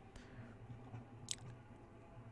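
Near-silent pause: faint low room hum, with one short, sharp click a little over a second in.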